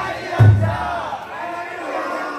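A crowd of taikodai (drum float) carriers shouting their chant in unison as they heave the float. A deep drum beat from the float booms under the voices about half a second in.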